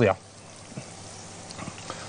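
Soft wet scraping and squelching of tomato sauce being spread over layered vegetables and sausage in a glass baking dish with a spatula, with a few faint clicks.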